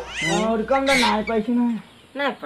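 A man speaking in an animated, high-pitched voice, stopping shortly before the end. A faint low hum under the voice cuts off about three-quarters of the way through.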